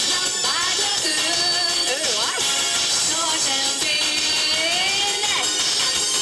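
A twist song played loud through a PA, a woman singing live into a microphone over a recorded backing track.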